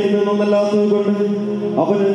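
A man's voice through a microphone and sound system singing a prayer chant, holding long steady notes, with a new phrase starting near the end.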